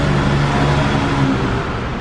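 Electric sunroof motor of a 2008 Honda CR-V whirring steadily as the glass panel slides back to fully open, easing off near the end.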